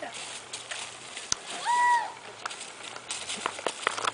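A walking horse's hooves on dry ground make scattered soft clicks. About halfway through, a short, high, held voice sound rises above them and is the loudest thing.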